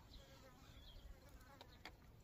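Near silence: faint outdoor background with a low rumble and a couple of faint ticks late on.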